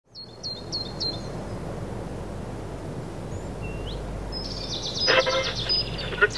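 Steady low outdoor background noise with a bird chirping four quick times in the first second and giving one rising call midway. Near the end, a vintage wooden tabletop radio comes in with a dense, busy sound as its dial is turned.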